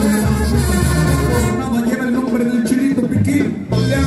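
Live Mexican banda music playing, with held brass notes over a strong low bass line, briefly dropping out near the end.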